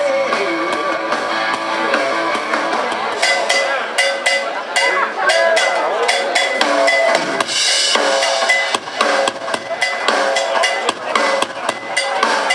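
Live rock band on stage: electric guitars and bass held over drums, giving way about three seconds in to a run of drum-kit hits and cymbal crashes with a voice over them.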